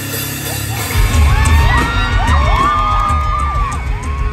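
Live rock band kicking in with drums and bass about a second in, loud through a crowd recording, while audience members whoop and cheer over it.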